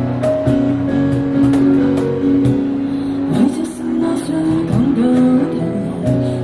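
Live busking band playing an instrumental passage: keyboard and acoustic guitar holding sustained chords, with a cajon striking sharp beats through the first half. Sliding, gliding notes come in around the middle.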